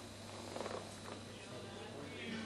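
Faint steady low hum with indistinct background voices.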